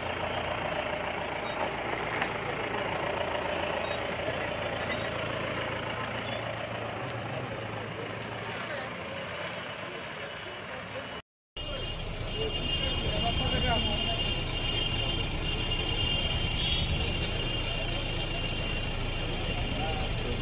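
An SUV's engine and road noise heard from inside the moving cabin. After a brief cut, a jeep-type SUV drives off outside, with voices in the background and a steady high-pitched tone for a few seconds.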